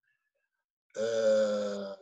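A man's drawn-out hesitation filler "ee", held at one steady pitch for about a second after a silent pause.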